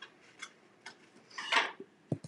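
Light handling clicks, then a short rustle about a second and a half in, as a plastic bag of craft glitter is set down and a clear glitter-filled ornament is picked up.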